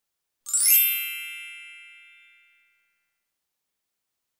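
A single bright, metallic chime sound effect struck about half a second in, its high ringing tones fading out over about two seconds.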